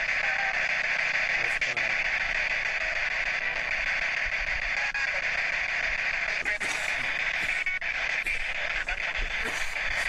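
Loud, steady hiss from a digital voice recorder's recording being played back, with a few faint, indistinct short sounds in it.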